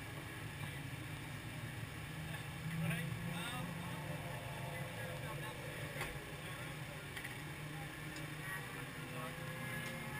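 A steady low engine hum, with faint indistinct voices now and then.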